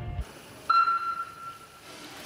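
Electronic swimming-race start signal: one sudden, steady high beep lasting about a second, over faint pool-hall hiss. A low rumble cuts off just after the start.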